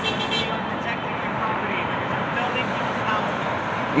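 Steady city traffic noise, with faint distant voices.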